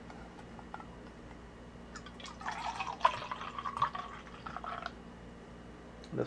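Carbonated homebrewed sour beer poured from a bottle into a drinking glass, the pour running from about two to five seconds in, after a few light clicks of the bottle and glass being handled.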